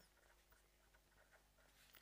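Near silence: room tone with faint writing sounds and a few light ticks.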